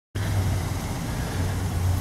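Car engine idling with a steady low hum.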